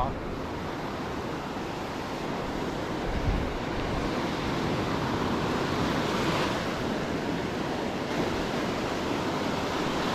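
Surf breaking and washing up a sandy beach: a steady rush of waves, with one wave break a little brighter about six seconds in.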